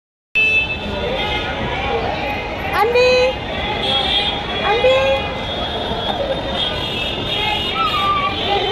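Busy public-place background: indistinct voices over steady traffic noise, with vehicle horns sounding. It begins abruptly just after the start.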